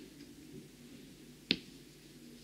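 A single sharp click about one and a half seconds in, as a diamond painting drill pen with a multi-placer tip presses resin drills onto the canvas.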